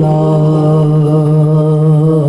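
A man chanting a devotional salawat/naat unaccompanied, holding one long steady note that breaks into small melodic turns near the end.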